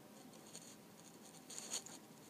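Quiet room tone with a brief, faint scratchy rubbing sound about one and a half seconds in, like a hand or fingers moving against a device.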